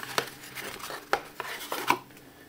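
Cardboard boxes handled: the white iPhone box is drawn out of its brown cardboard shipping box, giving a string of light knocks and scrapes of cardboard on cardboard, the sharpest near the end.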